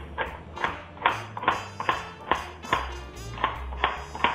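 Background music with a steady bass line, over a kitchen knife chopping carrot on a plastic cutting board in quick, even strokes, about three a second.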